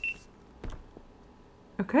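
A GoPro camera's high, steady electronic beep, ending just after the start, followed about two-thirds of a second in by a single soft knock, then near quiet until a woman says "Okay" near the end.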